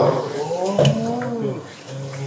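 A man's drawn-out, wordless voice into a lecture microphone, its pitch rising and falling, dying away about a second and a half in.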